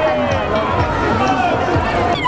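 Street parade crowd: many voices talking and calling at once, with music and a low, regular beat underneath.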